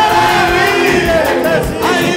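Live gospel music: a group of voices singing together over a band, with a steady drum beat of about two strokes a second.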